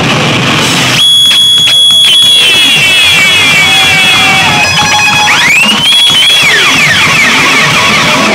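Live rock band playing loud and dense. From about a second in, a high held whine with sweeping pitches that rise and fall rides over the band.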